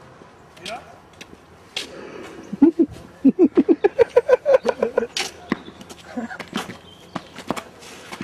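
A person's voice in a fast run of short, high-pitched syllables, about six a second, lasting some two and a half seconds. A few sharp clicks follow near the end.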